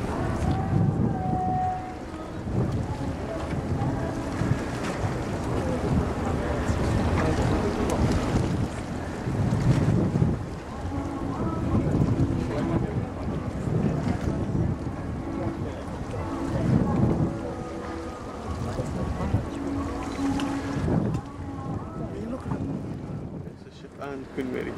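Wind buffeting the microphone in uneven low rumbles that swell and fade every second or two. Faint voices come and go behind it.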